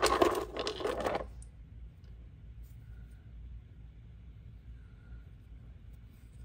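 Small stone nodules clicking and clattering against each other and the sides of a plastic tub as a hand rummages through them, for about the first second. After that only a faint low room hum.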